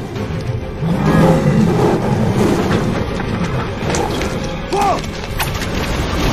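Dense action-film sound mix: dramatic music under loud crashing, splintering impacts and a few bending low cries, a few sharp hits falling near the end.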